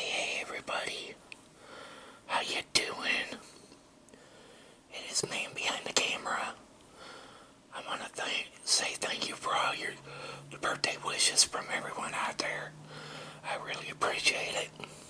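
A person whispering close to the microphone in several short phrases. A low steady hum comes in about halfway through.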